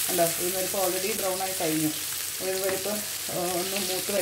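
Chopped onions sizzling in hot oil in a non-stick frying pan as they are stirred with a spatula. A melody of stepping, held notes plays over it and is the loudest sound.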